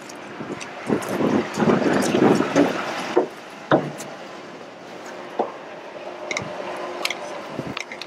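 A person climbing up onto a truck's deck: a cluster of scraping and scuffing for the first couple of seconds, then a few single knocks of boots on metal. The truck's engine idles steadily underneath.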